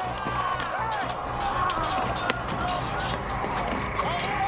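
Battle sound effects: many men shouting and yelling at once, with repeated sharp clashes and knocks, over background music.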